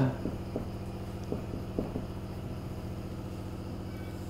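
A steady low machine hum with a regular throb, and a few faint short squeaks and taps of a marker writing on a whiteboard in the first two seconds.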